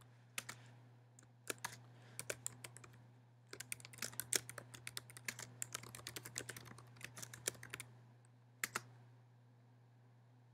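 Faint computer keyboard typing: a few scattered keystrokes, then a quick run of keys, and one last key press near the end.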